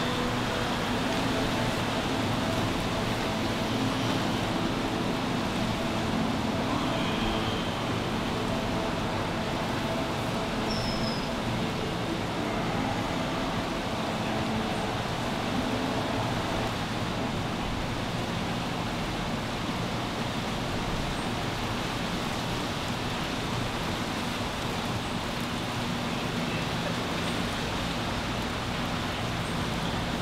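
Steady background hiss and rumble with no distinct events, with faint steady tones during the first half.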